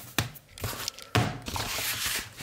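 Handling noise: a sharp click near the start, then from about a second in a spell of loud rustling and bumping as the camera is picked up and moved.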